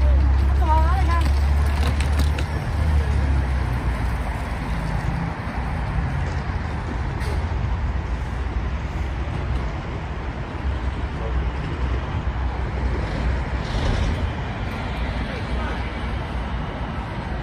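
Roadside traffic noise: a low engine rumble, strongest in the first four seconds, over a steady traffic hum, with scattered voices of passers-by.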